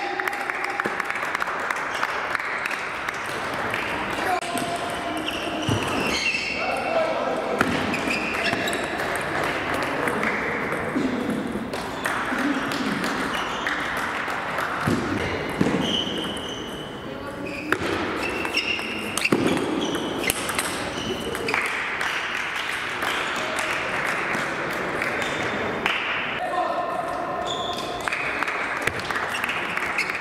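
Table tennis rallies in a large hall: the plastic ball clicks off bats and table again and again, over a steady background of voices and play from nearby tables.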